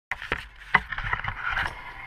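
Handling noise from a GoPro camera being moved and set in place: a few sharp knocks with rustling in between.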